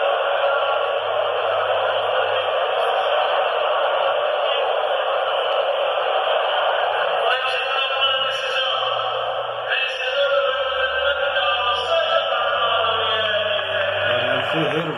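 Crowd in a sports hall making a steady, dense noise, muffled by an old tape recording. From about seven seconds in, pitched, voice-like sounds rise above it.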